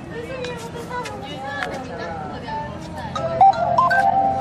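Several people talking in the background, then, about three seconds in, a short electronic melody of held notes stepping up in pitch comes in louder.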